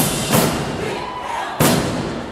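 Marching band drum line and brass striking three loud accented ensemble hits, the first two close together and the third about a second later, each ringing off the walls of a gymnasium.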